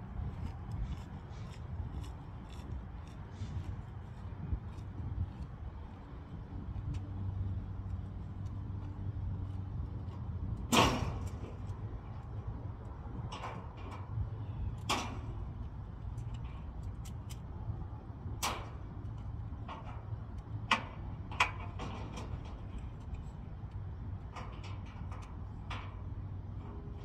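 Sharp metallic clanks and knocks from work on a steel car-hauler trailer carrying a pickup, with several scattered strikes and the loudest about eleven seconds in, over a steady low rumble.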